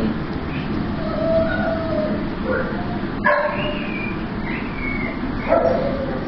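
Several shelter dogs in kennel runs barking and yipping, with a few drawn-out whines, scattered calls over a steady background noise.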